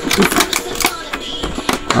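Clear plastic packaging tray crinkling and crackling as it is handled, a quick irregular run of sharp clicks.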